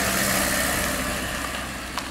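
A motor vehicle passing close by, its engine and road noise fading steadily as it moves away.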